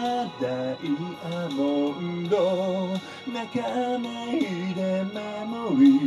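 A solo singer performing a cover song to their own instrumental accompaniment, holding some notes with vibrato.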